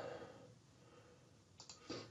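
Near silence with room tone, and a few faint short clicks near the end.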